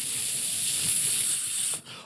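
A long, steady hiss, like a drawn-out "sss" voiced close into a handheld microphone, that cuts off suddenly shortly before the end.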